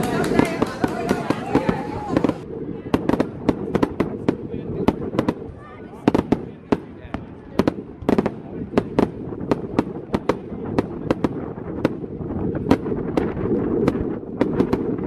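Voices and hand-clapping for about two seconds. Then fireworks going off: an irregular run of sharp bangs and crackles, a few a second, over a low rumble.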